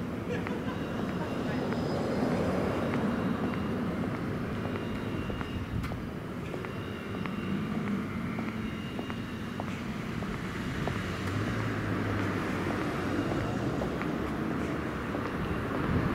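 City street ambience: traffic on the road beside the sidewalk, with faint voices and light regular footstep clicks.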